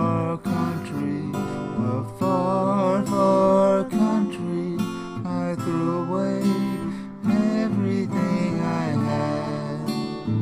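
Acoustic guitar strumming under a wavering melody line: the instrumental introduction of a country gospel song, before the vocal comes in.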